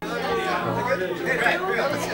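Several people talking at once in a large room: overlapping chatter, with no single voice standing out, over a steady low hum.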